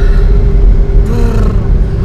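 Loud, steady low rumble of a car heard from inside the cabin: engine and road noise, with a constant hum over it.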